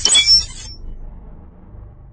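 Logo-intro sound effect: a sudden bright crash, like shattering glass with glittering high tones, in the first half second, over a low music rumble that fades away.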